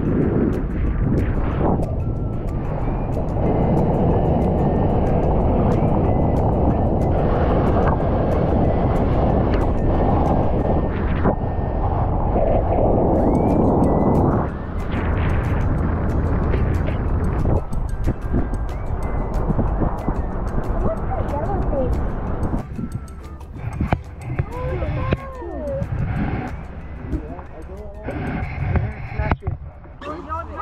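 A motorboat under way at speed: steady engine noise with wind and water rushing past, under background music. About halfway the noise drops as the boat slows, and voices come and go near the end.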